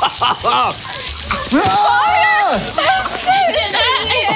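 Excited voices laughing and shouting, with one long drawn-out cry about halfway through, over the crinkling and tearing of plastic stretch wrap being pulled off.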